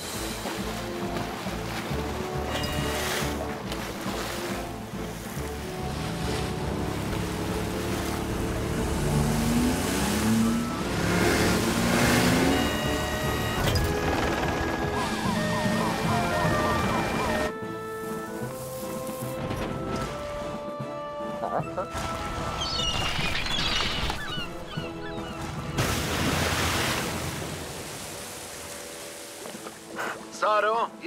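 Background music score with held notes and some rising figures, thinning out a little past halfway.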